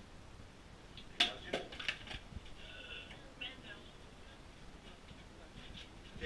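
Faint, distant voices, with a quick run of four or five sharp clicks or knocks between about one and two seconds in.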